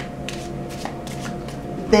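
A deck of tarot cards being shuffled by hand: a handful of short, soft card snaps and slides.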